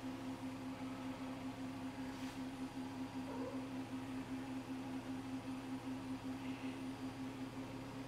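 A steady low mechanical hum with a rapid, even pulsing that does not change throughout.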